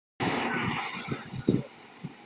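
A fire engine pulling out of its bay: a loud hiss starts abruptly and fades over about a second, followed by a few low thumps.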